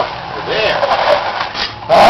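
A plate-loaded drag sled scraping over asphalt as it is pulled, under shouted encouragement. A loud burst comes near the end.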